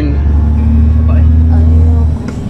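A heavy vehicle's engine heard from inside its cab while driving: a loud, steady low drone with a steady hum above it.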